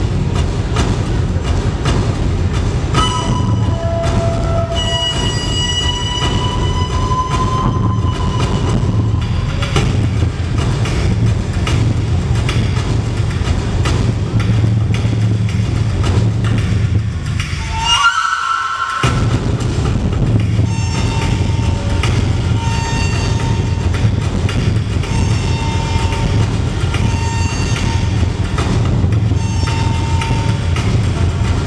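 Dance music played loud over a sound system: a steady heavy beat under held high melody notes. About two-thirds of the way through the beat stops for about a second under a short rising note, then comes back.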